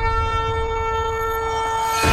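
A long, steady horn-like tone held at one pitch over a low rumble.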